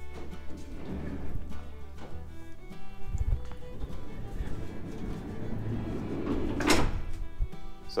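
Background music plays throughout. Over it come a low thump about three seconds in and a loud, sharp knock near the end, from the Mercedes Sprinter's sliding side door being handled.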